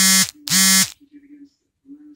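Two short, loud electronic buzzes about half a second apart, each at one steady pitch.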